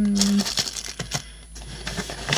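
Rustling and crinkling of packaging as a plastic-packed pen in its tray and the papers are lifted out of a craft-kit box by hand, with a few light taps and clicks.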